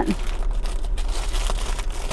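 Plastic bag rustling and crinkling as it is rummaged through: a steady crackle with small clicks.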